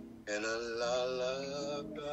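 A man singing one long held note with vibrato over plucked acoustic guitar notes.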